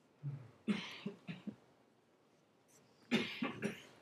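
A person coughing twice, faint, the coughs about two and a half seconds apart.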